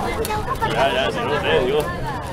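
Several spectators' voices talking over one another, fairly high-pitched, in unclear chatter.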